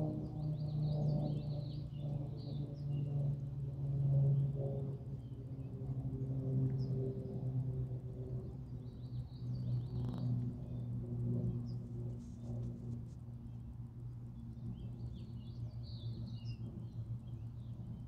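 Birds chirping in short high bursts, in three clusters near the start, in the middle and near the end, over a steady low droning hum that slowly fades.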